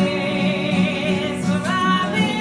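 Several voices singing together over strummed acoustic guitars. They hold a long wavering note, then step up to a higher note near the end.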